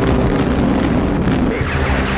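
Artillery guns firing: heavy booms and blast noise, with background music running underneath.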